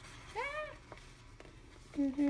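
A single short, high-pitched call that rises and then falls, about half a second in.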